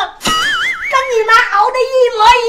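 A high-pitched voice speaking in an exaggerated, wavering sing-song tone, over background music.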